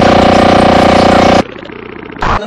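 A loud, steady buzzing tone with many pitches stacked together, held for about one and a half seconds and then cut off suddenly, leaving a quieter jumbled sound.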